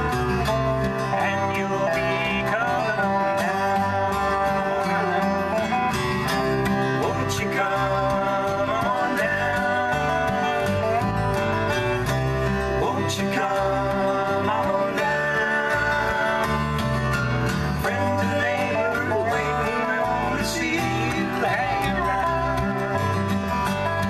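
Country-bluegrass trio playing an instrumental passage: a dobro played lap-style with a slide bar, with sliding and wavering notes, over a strummed acoustic guitar and an electric bass.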